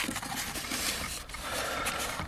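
Hands rubbing and pressing on the foam canopy and nose of an RC jet: a soft, steady scraping handling noise.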